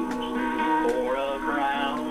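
A man singing an old gospel song over a backing track, his voice sliding between held notes.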